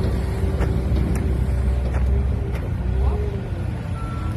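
Heavy diesel engine of a pipeline tractor running steadily with a low rumble.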